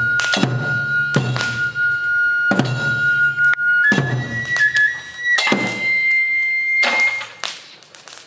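Tsugaru kagura shrine music: a Japanese bamboo transverse flute (fue) holds long notes that step up in pitch, over slow, evenly spaced drum strikes, each followed by a ringing, roughly one every second and a half. The music thins out near the end.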